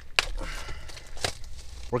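Plastic shrink-wrap on a booster box being torn and crinkled by hand, with two sharp snaps, one just after the start and one a little past halfway.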